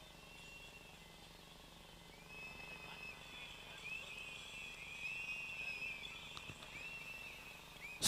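Faint high whistling: a run of arching whistled tones, some overlapping, starting a couple of seconds in and going on almost to the end.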